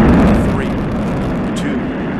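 Space Shuttle main engines igniting on the launch pad: a loud, steady rumbling roar, heaviest in the low end, loudest at the start and then holding just below that.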